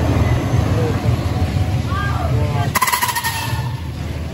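Top Spin amusement ride moving its empty gondola: a steady low rumble, with a short, sharp high creak from the ageing ride's metalwork a little under three seconds in.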